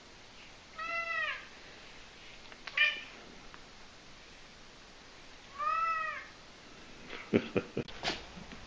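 A domestic cat meowing: two drawn-out meows about five seconds apart, each rising and then falling in pitch, with a shorter call between them. A quick run of knocks near the end.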